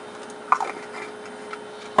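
Piezo clicker on the alpha counter's digital counter module ticking at irregular moments, a few clicks in two seconds, each one a detected alpha particle being counted. A faint steady tone runs underneath and stops just before the end.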